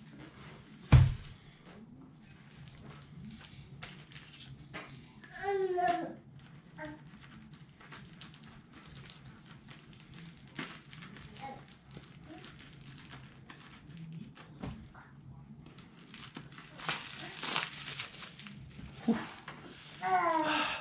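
Handling and opening a plastic-wrapped rod package: a sharp knock about a second in, then scattered clicks and rustles as the wrapping is cut with a small blade, and a longer stretch of plastic crinkling and tearing near the end.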